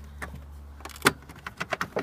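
A few irregular sharp clicks and knocks of hard plastic and wiring being handled as a car's fuse box is worked loose by hand, the strongest about a second in, over a steady low hum.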